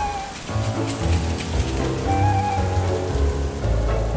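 Steady rain hiss under background music, with low bass notes and a few held higher tones.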